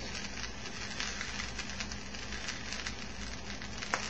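Grilled cheese sandwich filled with linguine and meat sauce frying in butter in a frying pan on an electric burner: a steady sizzle with fine, constant crackling.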